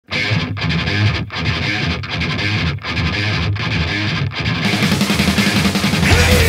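Opening of a Czech hard-rock song: a distorted electric guitar riff, broken by short stops about every three-quarters of a second. About four and a half seconds in, the sound thickens into a fuller, brighter held part.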